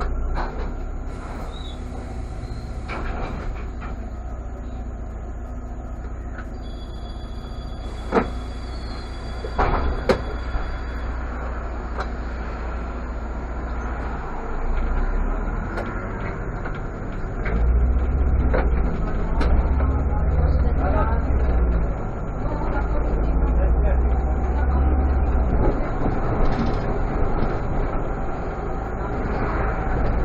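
Irisbus Citelis city bus with a natural-gas (CNG) engine, heard from inside: the engine idles while the bus stands at a stop, with a couple of sharp knocks near the middle. From about 17 seconds in the engine works harder and louder as the bus pulls away.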